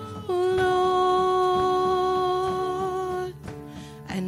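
Live worship band: the singers hold one long sung note over the band, steady in pitch, breaking off a little over three seconds in before the next line.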